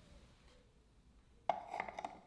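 A framed award plaque knocking against a wall as it is hung on nails: one sharp knock about one and a half seconds in, followed by a few lighter clicks and rattles.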